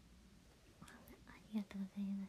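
A woman's quiet voice, very soft at first, beginning about a second in, then two short voiced syllables near the end.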